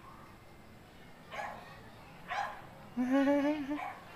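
An unseen dog barking: two short barks, then a longer, drawn-out bark about three seconds in, the loudest of them.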